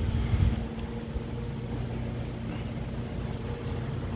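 A steady low machine hum and rumble, with a few louder bumps in the first half second.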